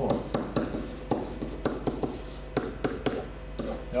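Dry-erase marker writing on a whiteboard: a quick string of short strokes and taps as a word is written out.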